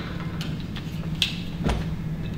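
Sunglasses being handled and set onto the head form of a laser lens test rig: a few light clicks and knocks, the loudest near the end, over a steady low hum.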